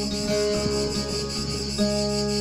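Acoustic guitar played fingerstyle, notes ringing on with fresh notes plucked near the end, over a steady chorus of cicadas in the background.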